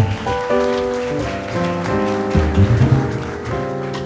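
Jazz trio playing live: piano chords and double bass notes over a steady shimmer of cymbals from the drum kit.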